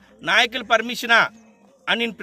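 A man speaking Telugu in quick, emphatic phrases, with a long held vowel near the middle before a short pause.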